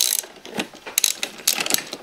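Hand ratchet wrench clicking in short, irregular strokes as it turns a motorcycle crash-bar mounting bolt to take the bar off.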